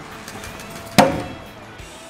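A thrown knife striking and sticking into a wooden plank target: one sharp thunk about a second in, with a brief metallic ring as it dies away.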